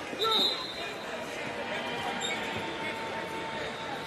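Basketball bounced on a hardwood court in a large arena, over a steady murmur of crowd and voices, with a short high squeak near the start.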